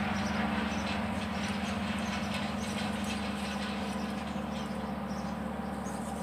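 A steady low machine hum runs throughout, with light crackling and rustling as plastic nursery pots and plants are handled, most often in the first few seconds.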